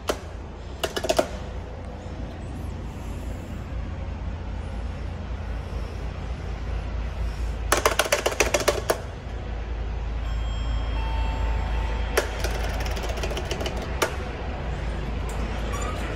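Elevator hall call button being pressed, with a burst of rapid clicking about eight seconds in and a shorter one about a second in, over a steady low rumble. A short steady tone sounds at about eleven seconds.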